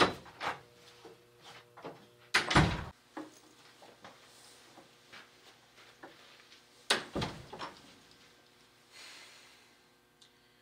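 A wooden door being used: a heavy thump about two and a half seconds in, then the door shutting with another heavy thump about seven seconds in, with fainter knocks and steps around them.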